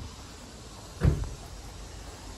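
A single short thump about a second in, over a steady low street background.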